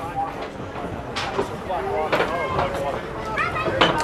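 Other people talking at a moderate distance over a steady crowd and outdoor background, with a couple of brief knocks.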